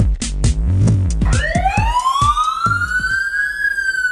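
Electronic drum-machine beat with heavy bass, then a single siren wail starting about a second in that rises steadily for about two seconds and eases slightly downward near the end, over the fading beat.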